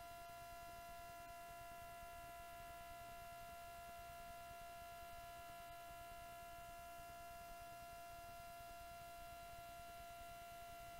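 Near silence with a faint, steady electrical whine: a few constant high tones over low hiss, as from a powered sound system or recording chain with nothing playing through it.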